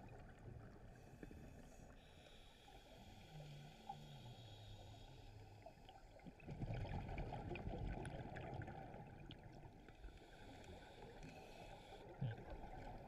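Underwater: scuba exhaust bubbles rushing and gurgling, heard faintly through a camera housing. A louder rush of bubbles comes about six and a half seconds in, and a faint low wavering tone is heard a couple of seconds in.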